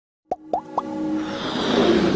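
Animated-logo intro sound effects: three quick plops, each rising in pitch, about a quarter second apart, then a swelling whoosh that builds up with sustained synth tones.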